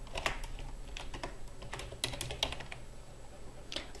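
Computer keyboard being typed on slowly, key clicks coming irregularly a couple of times a second, as a first name is entered. A faint low hum runs underneath.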